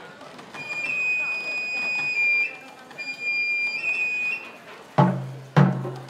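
Japanese festival hayashi music: a bamboo transverse flute plays two long, high held phrases, then a taiko drum is struck twice, about half a second apart, near the end.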